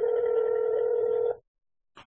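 Telephone ringing tone heard through a phone's speaker while a call is placed: one steady ring that stops abruptly about a second and a half in. A brief click follows near the end.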